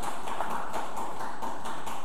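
A run of light, irregular taps or clicks over a steady hiss.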